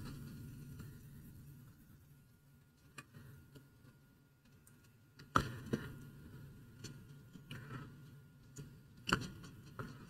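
Faint scratching of a paintbrush working acrylic paint on a painting panel, with a few light taps and clicks, two of them close together about halfway through.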